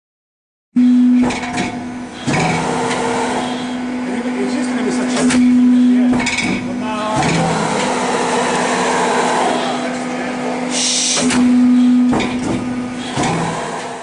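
Sheet-metal guillotine shear running with a steady hum. Several sharp knocks and clanks, and a short hiss near the end, sound over it.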